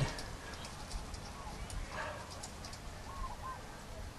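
A bird calling faintly in the background, two short calls about three seconds in, over quiet outdoor background noise, with faint small ticks from the light fixture's parts being handled.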